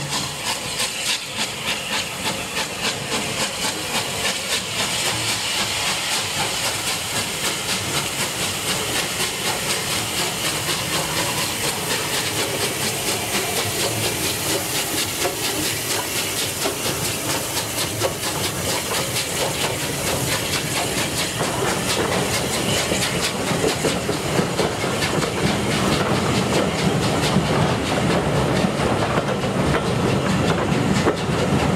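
Steam locomotive 34070 Manston, a three-cylinder Bulleid Battle of Britain class Pacific, passes close by with a loud, steady hiss of steam. It grows louder as it nears, then its coaches roll by with the clickety-clack of wheels over rail joints.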